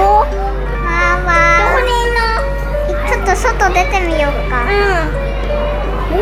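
A child's voice over background music, the music playing a melody of held notes that step from one pitch to the next.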